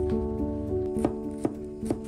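Background music of soft melodic notes, with three sharp knife chops on a cutting board in the second half as shallots are sliced.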